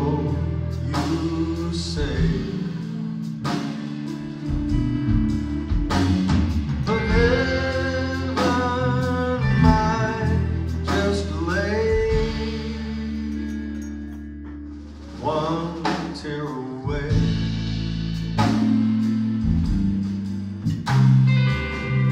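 Live blues-rock band playing a slow song: an electric guitar lead with bent notes over drums, bass and rhythm guitar. The band eases off briefly about two-thirds of the way through, then comes back in.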